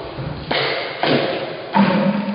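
Three heavy wooden thuds or slams, about half a second to two-thirds of a second apart, each dying away with a ringing echo in a large wood-panelled room. They are part of a run of similar hits.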